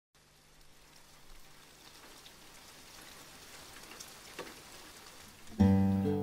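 Faint steady hiss, slowly getting louder, with a couple of soft clicks. About half a second before the end, background music comes in with a held guitar chord.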